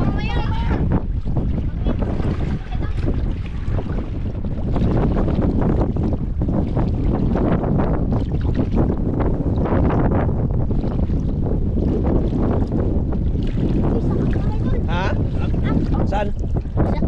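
Strong wind buffeting the microphone in a steady low rumble over shallow seawater sloshing around wading legs.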